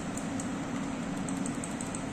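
Steady low machine hum with a background hiss, the constant room noise of equipment fans and ventilation.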